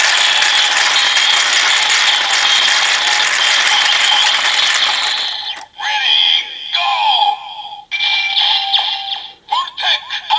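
DX Build Driver toy belt: its crank handle is turned, and its gears ratchet steadily over the belt's looping electronic sound for about five seconds. Then the cranking stops and the belt plays its finisher sequence, short electronic sound effects and voice with gliding tones, in several bursts.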